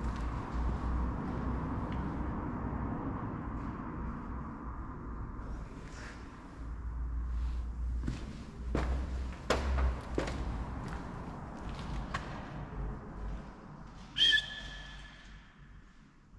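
Footsteps and camera handling noise while walking over a debris-strewn floor, with a few scattered knocks. Near the end a short, steady whistle-like tone sounds for about a second and a half.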